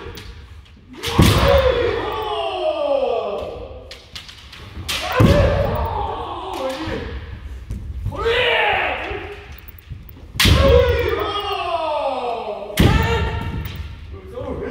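Kendo sparring: four loud stamping strikes (fumikomi), each a foot slamming the wooden dojo floor as the bamboo shinai lands, and each followed by a long kiai shout that falls in pitch. The shouts echo around the large hall.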